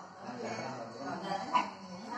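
Indistinct voices talking, with one short sharp sound about one and a half seconds in that is the loudest moment.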